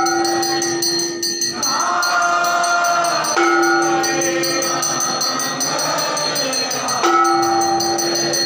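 Hindu aarti devotional singing: long held sung notes, each lasting about three seconds, with new ones starting about halfway through and again near the end, over a steady rhythmic ringing of bells and small cymbals.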